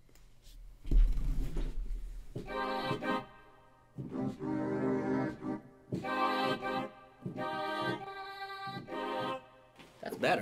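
A sampled instrument with an organ-like, reedy tone played as a run of sustained chords from a keyboard in a beat-making program, about five chords with short gaps between them. A deep bass hit sounds about a second in.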